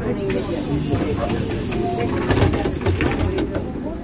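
A sudden burst of compressed air hissing from the Ikarus 415T trolleybus's pneumatic system. It starts about a third of a second in and dies away near the end.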